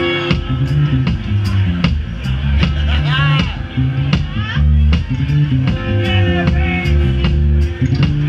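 Live band playing a bass-led funk groove: electric bass guitar and drum kit keep a steady beat, with high sliding notes about three seconds in.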